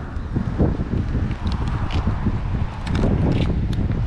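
Wind buffeting the camera microphone outdoors, over footsteps and stroller wheels rolling across asphalt, with scattered light clicks and taps.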